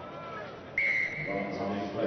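Rugby referee's whistle: one short, sharp blast about three-quarters of a second in that trails off, stopping play for a penalty after advantage. Voices follow.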